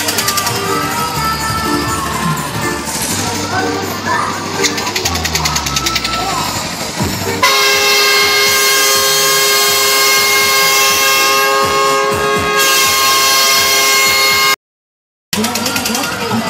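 Fairground music and voices, then, about seven and a half seconds in, a loud steady horn sounds on one held note for about seven seconds. The sound cuts out completely for under a second near the end.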